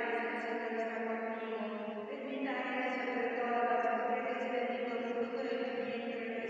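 A congregation's voices chanting together in unison, in long held lines with only brief breaks.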